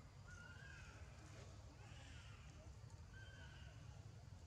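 Faint, high-pitched animal calls: three short arched tones about a second apart, over a low steady outdoor rumble.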